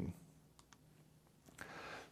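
Two faint, quick clicks close together from the button of a handheld presentation remote, advancing the slide, in an otherwise quiet room.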